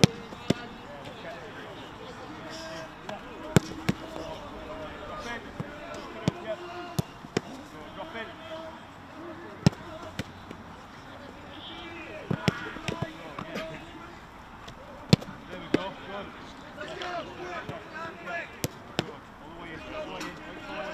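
Footballs being struck in a shooting drill: single sharp thuds of ball on boot and on goalkeeper's gloves every second or two, over distant shouts and chatter of players.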